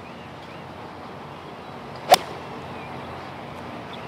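A golf club strikes the ball from the fairway: a single sharp crack about two seconds in, heard over a faint, even outdoor hush.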